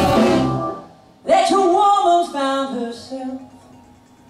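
Live blues band cuts off sharply about a second in. A voice then sings a short phrase on its own and fades away.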